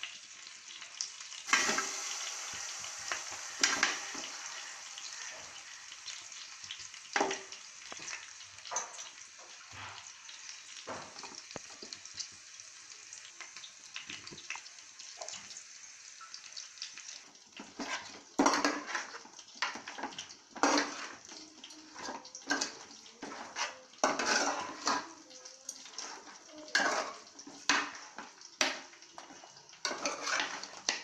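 Chicken pieces stirred in a steel pan: irregular clattering and scraping against the metal, coming in bursts through the second half. Before that, a steady hiss with occasional clicks.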